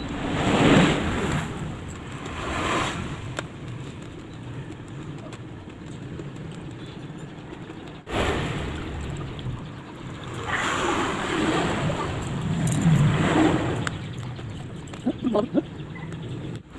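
Motor vehicles passing on a road: a steady traffic hum that swells as vehicles go by, loudest about a second in and again for several seconds from about eight seconds in.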